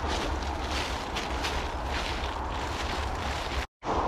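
Wind buffeting an action-camera microphone: a steady low rumble under a hiss. It cuts out for a moment near the end.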